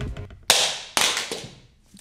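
Two sharp hits about half a second apart, each trailing off briefly: a plastic QiYi cubing timer being thrown down.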